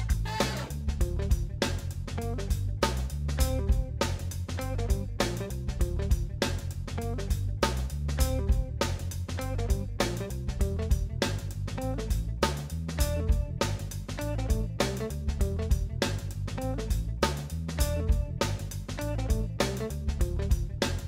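Background music: an instrumental track with guitar and a steady beat.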